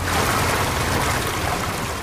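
Rushing water: a steady, even rush that comes in suddenly and eases slightly over two seconds.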